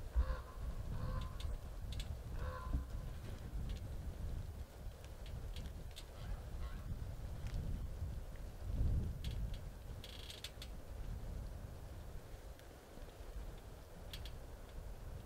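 Geese honking, several short calls in the first three seconds, over a steady low rumble. Scattered light ticks and rustles are heard, with a small cluster about ten seconds in.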